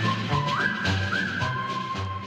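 Talk-show intro theme music: a high, whistle-like melody that holds notes and slides up between them twice, ending on a long held note, over a steady bass and drum beat.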